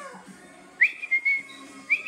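A person whistling two short notes about a second apart, each starting with a quick upward slide and then held, over faint background music.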